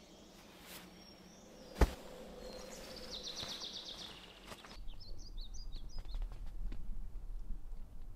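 Outdoor forest ambience with a bird calling in a quick high trill, and one sharp click about two seconds in. Just before the midpoint the sound changes to a low steady rumble with scattered clicks and short bird chirps.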